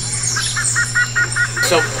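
Jungle sound effect of a bird calling in a quick run of about seven repeated notes, around five a second, over a steady low hum.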